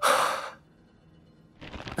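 A man's breathy sigh of wonder, about half a second long, then quiet until a short intake of breath just before he speaks.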